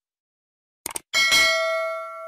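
Subscribe-button sound effect: two quick clicks just before a second in, then a bell struck and ringing on with several clear tones that slowly fade.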